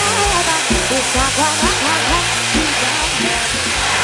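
A bang fai, a homemade black-powder rocket, giving a steady rushing hiss as it fires off its launch tower. Music with a steady beat plays underneath.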